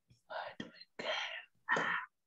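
Someone whispering: three short breathy whispered phrases, much quieter than normal speech.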